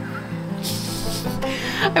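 A woman's short, breathy stifled laugh through the hand over her mouth, a rush of air a little under a second long starting about half a second in, over steady background music.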